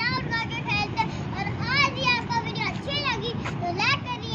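Young girls' high-pitched voices, chattering and calling out while they play, over a steady low background noise.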